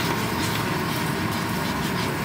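Food sizzling steadily in a frying pan on an induction hob as a sauce of soy sauce, simmering sauce and gravy is poured in.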